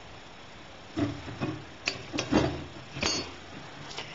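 A hand tube cutter turned around 3/4-inch copper tubing, its cutting wheel working into the pipe. After a quiet first second there are about two seconds of irregular metal clicks and knocks.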